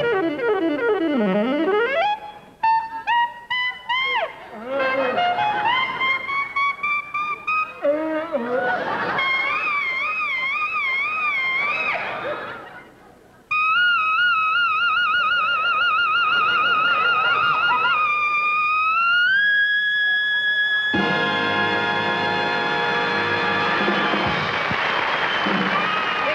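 Solo saxophone cadenza: swooping glissandos and quick rising runs, then a long note with wide vibrato that slides up to a higher held note. The full dance orchestra comes in on a sustained final chord for the last few seconds.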